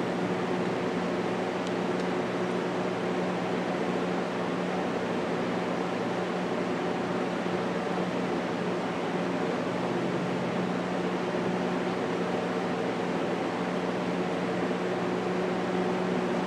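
Steady ventilation hum with a low, even tone underneath.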